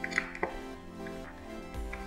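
Two light metallic clicks near the start, from hands working a steel entry door's lever handle and its metal fittings, over background music.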